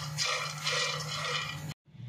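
Phool makhana (fox nuts) dry-roasting in a nonstick wok, stirred with a spatula: light rattling and scraping of the puffed seeds against the pan in uneven strokes, cut off abruptly near the end.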